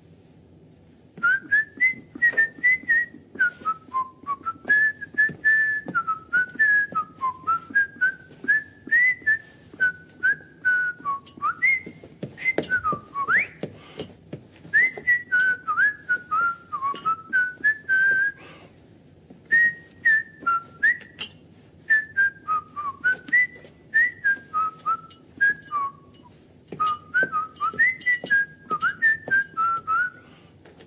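A man whistling a tune by mouth, one clear note at a time, sliding up and down in short phrases with brief pauses between them.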